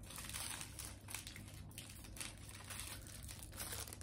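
Snack wrapper crinkled in the hands: a scatter of faint, irregular crackles.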